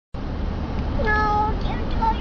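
A single high voice held for about half a second, about a second in, over the steady low rumble of a car's cabin.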